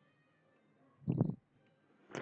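One short voice-like sound, about a third of a second long, a little over a second in, against near silence.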